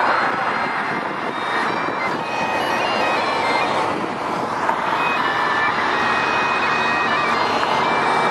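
Steady city road traffic noise from buses and cars on a busy bridge, with a few faint held high notes over it from about halfway through.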